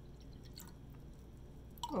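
Faint squishing of a metal spoon working in thick soap paste inside a glass jar, over a low steady room hum.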